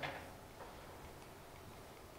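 Quiet room tone with a faint steady low hum and hiss, and no distinct sound event.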